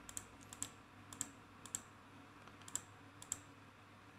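Faint computer mouse clicks: six pairs of quick, sharp clicks, each pair a fraction of a second apart, spread over the four seconds.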